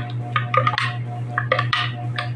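A spoon stirring sugar into a cup of chocolate milk, clinking and scraping against the cup in quick, irregular strokes. A steady low hum runs underneath.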